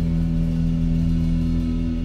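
A live jazz-rock band of drums, electric guitar, bass and keys holding one long sustained chord over a low, continuous drum wash.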